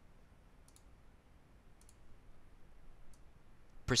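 A few faint, sharp clicks spaced about a second apart over quiet room tone.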